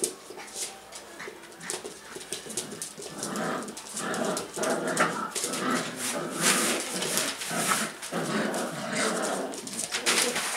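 Young Pyrenean Shepherd puppies growling in play as they tug at a small rope toy, in repeated rough bursts from about three seconds in, over the scuffle and clicking of paws on tile and newspaper.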